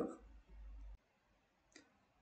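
Near silence between spoken words: a brief low hum in the first second, then dead quiet broken once by a single faint click near the end.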